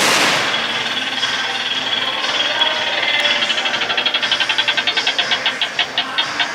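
A punch hits the bag of a boxing arcade machine, and the machine then sounds its electronic score count-up as the display tallies the punch strength. The count-up is a high beeping tone pulsing rapidly, and the pulses slow down as the score nears its final number.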